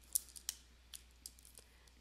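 A few faint clicks and taps from a stylus on a drawing tablet as it writes on the slide, two sharper clicks in the first half second, then lighter ticks.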